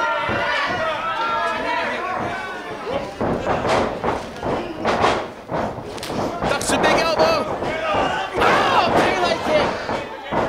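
Several heavy thuds of wrestlers landing on a wrestling ring's canvas mat, starting about three seconds in and repeating toward the end, with voices throughout.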